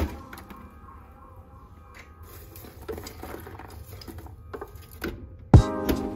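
Scattered light clicks and rattles as the metal kettle of a kettle-style popcorn machine is tipped by its handle to dump the popped corn. Background music with a strong drum beat comes in loud near the end.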